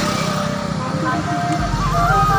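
Roadside street noise: a steady rumble of passing traffic, with music playing in the background.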